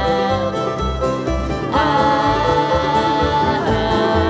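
Live acoustic string band playing: fiddle, upright bass, acoustic guitar and banjo, with a pulsing bass beat under a long high held note that steps up in pitch a little under halfway through.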